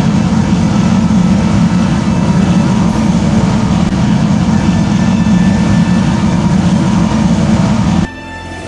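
A steady, loud, engine-like vehicle roar with a deep rumbling core, cutting in and out abruptly.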